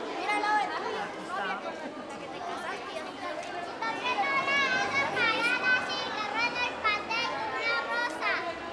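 Several voices talking at once, with high children's voices chattering and calling out, busiest in the second half.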